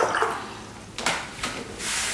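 Water swishing as a paintbrush is rinsed in a painting-water tray, with a light knock about a second in.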